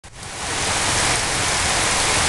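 Heavy rain falling steadily onto a waterlogged lawn and puddles, an even hiss that fades in over the first half second.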